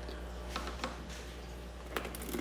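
Plastic bottles being handled, with a few faint light clicks as a bottle of phytoplankton culture is tipped over an empty bottle. The culture starts to pour in near the end.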